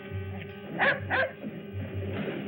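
A dog barks twice in quick succession about a second in, over sustained background music.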